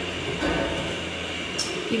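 Steady low rumbling background noise with a faint high steady tone, and a soft low bump about half a second in, as the phone is moved about.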